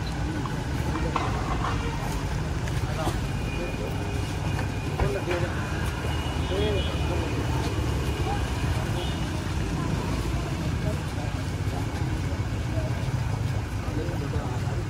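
Several men's voices talking over one another in an open-air gathering, over a steady low rumble of street traffic.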